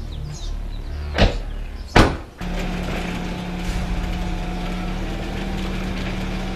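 Two car doors shutting with sharp thuds about a second apart, then a BMW 3 Series sedan's engine idling steadily.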